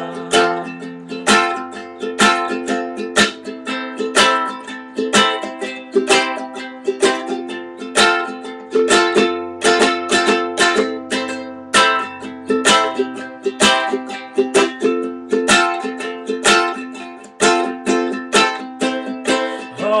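Ukulele strummed in a steady rhythm of chords, an instrumental passage with no singing.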